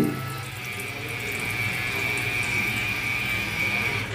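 Water running from a voice-controlled smart tap's chrome spout into a sink as a steady stream that dies away near the end as the tap shuts off. A thin, steady high whine sounds alongside it.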